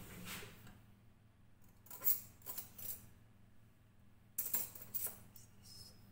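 Metal cutlery clinking in an open kitchen drawer as it is rummaged through for a teaspoon: a sharp clink about two seconds in, and a quick run of clinks a little after halfway.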